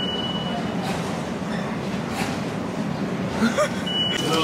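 Metro ticket machine's card reader giving a high, steady electronic beep about a second long as it reads a Navigo pass, over a steady station din. A second short beep at the same pitch comes at the very end.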